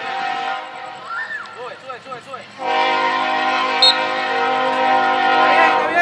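A horn sounding a steady chord of several notes: a short blast at the start, then a long, loud held blast from a little past halfway to the end.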